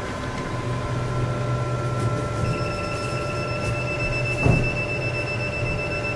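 Diode laser hair removal machine running with a steady low hum from its cooling system. About two and a half seconds in, a continuous high electronic beep starts and holds for about four seconds: the tone the machine gives while the handle switch fires the laser. A single short knock sounds a little past four seconds.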